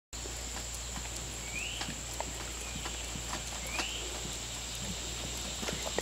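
Gray wolf licking ice cream from small cups in a metal pan, with scattered soft clicks and taps. A steady insect buzz runs behind it, and a bird gives a short rising chirp twice.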